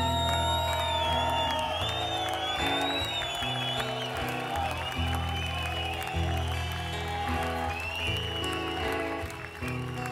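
Live reggae band playing an instrumental passage, with a deep bass line that changes notes every second or so and acoustic guitar, while the crowd applauds.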